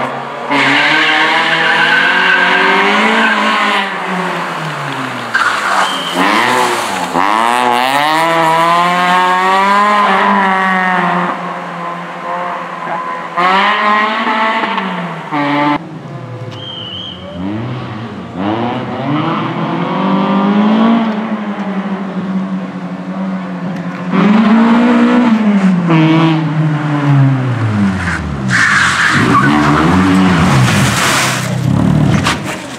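Peugeot 206 RC rally car's 2.0-litre four-cylinder petrol engine revving hard as the car pulls away and runs through the gears, its pitch climbing and dropping again and again with each shift and lift. Near the end the tyres squeal as the car slides.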